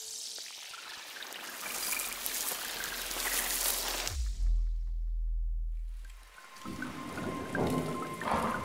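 Logo-reveal sound effects: a swelling, spattering hiss like liquid being poured, then a deep bass boom about four seconds in that sinks away, followed by a second fizzing swell with a held ringing tone near the end.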